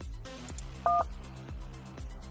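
A single short telephone keypad (DTMF) tone, two pitches sounding together, a little under a second in, over a steady background music bed.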